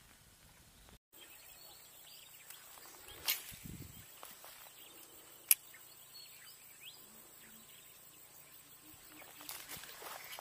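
Quiet outdoor ambience with faint scattered sounds. A faint click comes about three seconds in, and a single sharp click about five and a half seconds in.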